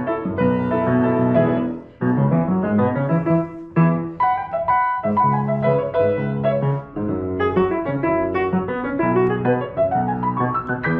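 Three player grand pianos (a Steinway Model L, a Samick and a Pramberger) playing streamed music together on their own, with the Pramberger turned up. The chords and runs break off briefly about two seconds in and again a little later.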